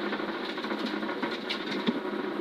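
Subaru Impreza N4 rally car's turbocharged flat-four engine and tyre noise heard inside the cabin, running steadily at lower revs as the car slows for a chicane. There are a few short clicks and knocks near the end.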